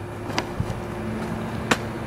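A steady low mechanical hum, with two short sharp clicks, one about half a second in and one near the end.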